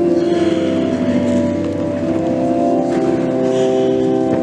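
Church hymn music: sustained chords held for about a second or more each, changing pitch several times.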